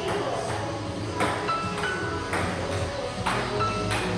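Table tennis ball clicking off paddles and the table about once a second in a rally, over background pop music.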